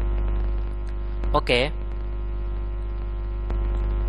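Steady electrical mains hum on the recording, a low buzz with a ladder of higher overtones, broken once by a short spoken "ok" about a second and a half in.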